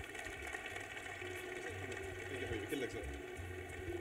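Audience applauding at the end of a speech: a fairly soft, even patter of clapping with a few indistinct voices among it.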